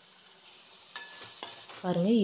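A slotted metal spatula stirring chopped onions, tomatoes and cashews frying in a metal pan: quiet at first, then scraping and a few clinks against the pan from about a second in.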